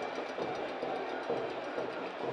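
Stadium crowd noise during a football match, a steady roar.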